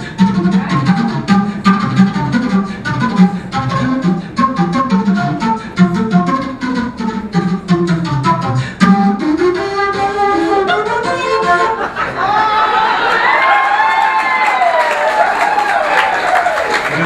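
Unaccompanied jazz flute solo using beatbox-style extended technique: for the first nine seconds, rapid percussive attacks over a low pitched undertone, then a rising glide. From about twelve seconds come smooth, higher flute lines that bend up and down in pitch.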